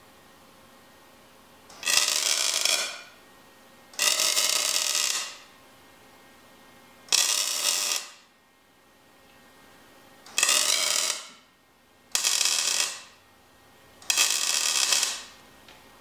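Wire-feed welder laying six short tack welds, each a crackling burst of about a second with a quiet pause between, fixing steel motor mounts and a brace tube in place.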